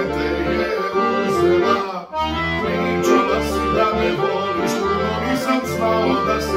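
Piano accordion playing a folk tune: held reed notes and chords over a repeating bass, with a brief break about two seconds in.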